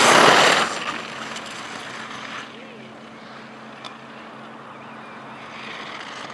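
Skis carving across hard snow as a skier passes close by: a brief loud hissing scrape that swells and dies away within the first second, followed by quieter outdoor background with a steady low hum.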